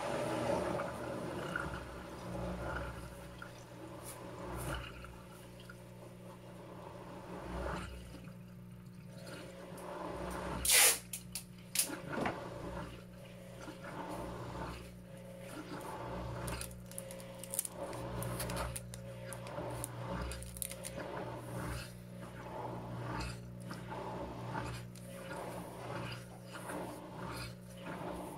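Panasonic 16 kg top-load washing machine starting its spin cycle: a steady low motor hum with water sounds and a regular beat of short swishes. One loud, brief noise stands out about eleven seconds in.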